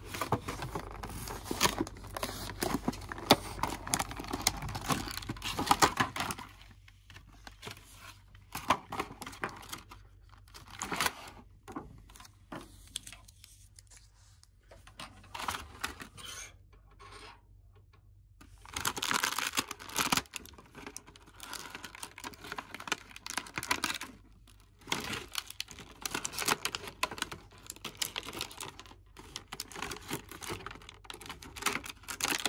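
Clear plastic toy packaging handled and opened by hand: a plastic tray and a clear plastic bag crinkling, rustling and tearing. The handling comes in bursts, busiest in the first six seconds and again about twenty seconds in, with quieter stretches of scattered plastic clicks between.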